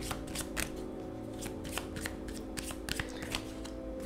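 Tarot cards being shuffled and handled: a run of short, irregular papery snaps and flicks, over soft background music with sustained tones.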